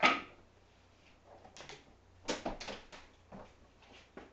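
A sharp knock right at the start, then a few scattered lighter knocks and clicks.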